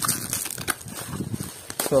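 Plastic bubble wrap crinkling and rustling in the hands as a package is unwrapped, with scattered sharp crackles.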